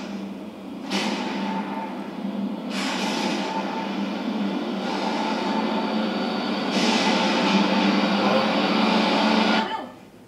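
Trailer sound design played through a TV: a loud rumbling drone that swells in steps and cuts off suddenly near the end.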